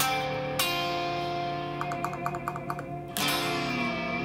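D7♯9 chord strummed twice on a clean-toned Stratocaster-style electric guitar, once about half a second in and again about three seconds in, ringing out between the strokes.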